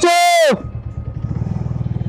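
Single-cylinder Bajaj Avenger motorcycle engine running at low speed in slow traffic, with an even pulsing beat. A loud voice fills the first half-second.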